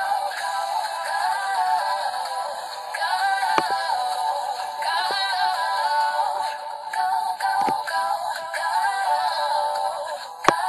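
A girl singing a cover of a pop song, with music behind her. There are two brief knocks, about a third of the way in and again near three quarters of the way through.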